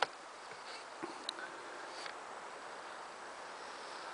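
Quiet outdoor background: a steady soft hiss, with a faint click at the start and a couple more about a second in.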